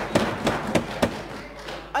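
A quick run of sharp thumps, about five in the first second, then fading into faint murmuring voices.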